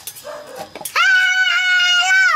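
A child's long, high yell, starting about a second in, held on one pitch and then sliding down at the end.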